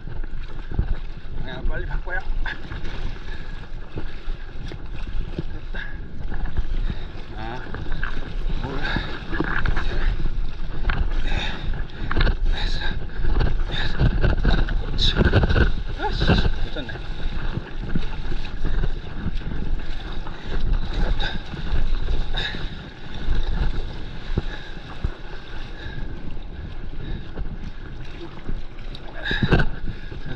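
Water rushing and splashing around a stand-up paddleboard as it is paddled onto and rides a breaking wave, with heavy wind buffeting on the board-mounted camera's microphone. It is loudest around the middle, when whitewater surges over the board's nose.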